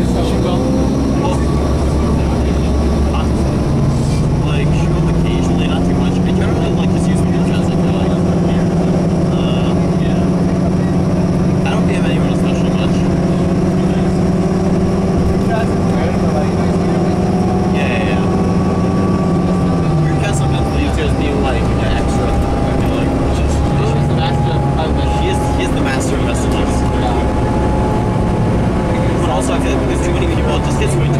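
Inside a 2003 New Flyer DE40LF hybrid bus at highway speed: the Cummins ISB diesel pulls steadily under the Allison EP40 hybrid drive, its low note rising a second or so in and dropping away about two-thirds through, while a higher whine slowly climbs in pitch over constant road noise.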